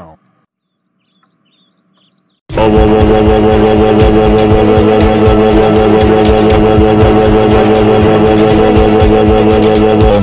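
After about two and a half seconds of near silence, a very loud, distorted voice cuts in suddenly, shouting "oh" over and over at one steady pitch. It is a deliberately overdriven meme sound effect.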